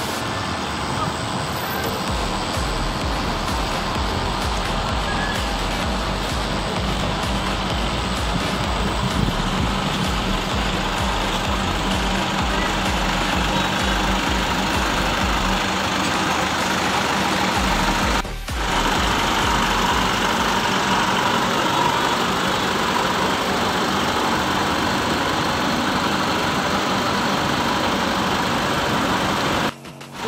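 Steady din of idling diesel coach engines in a bus terminal, with a low pulsing rumble in the first half. The sound briefly drops out about 18 seconds in.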